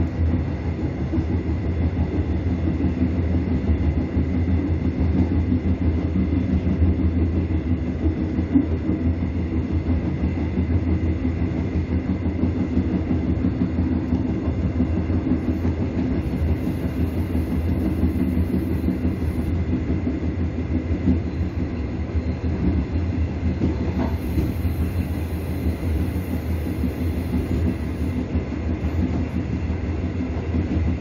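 Train running along the track, a continuous steady rumble of wheels on rails.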